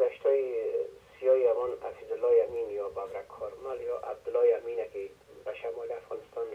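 Speech only: a caller talking steadily over a telephone line, the voice thin and narrow like a phone call.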